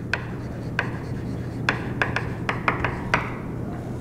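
Chalk writing on a blackboard: a quick, irregular run of sharp chalk taps and short scratching strokes as a word is written.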